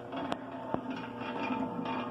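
Treadmill DC motor running steadily, belt-driving the paddle shaft of an empty stainless steel meat mixer, with an even hum and a few faint clicks.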